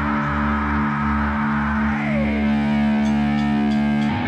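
Punk rock demo recording: distorted electric guitar and bass holding one long sustained chord, with a falling tone sliding down about two seconds in. The held chord breaks off into the next section right at the end.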